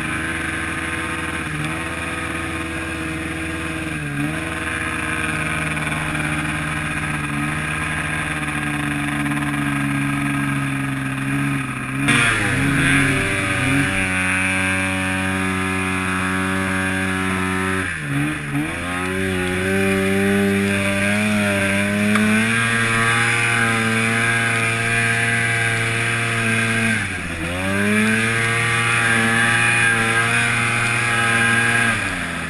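Arctic Cat 700 two-stroke snowmobile engine running hard through deep powder snow. Four times its revs drop and climb back up as the throttle is let off and opened again, the biggest a little before halfway, after which it runs louder.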